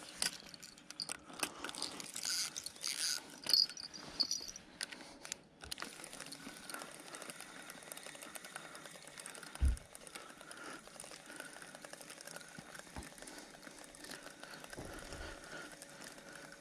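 Spinning fishing reel being wound in after a bite, a faint steady whir with a slight regular pulse from the turning handle. There are handling clicks and rustles over the first few seconds and a single low thump near the middle.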